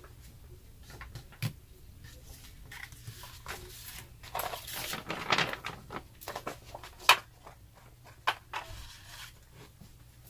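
A sheet of watercolor paper handled on a tabletop: a rustling, crinkling stretch about halfway through as it is lifted and tilted, with scattered sharp taps and clicks as the brush and small pots are set down.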